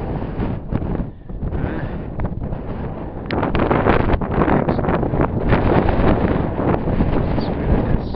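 Wind buffeting the microphone of a handheld camera on an exposed hilltop, a rough, uneven rumble that gusts louder about three seconds in.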